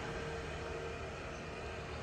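Steady, even outdoor background noise, a low hiss with no distinct event.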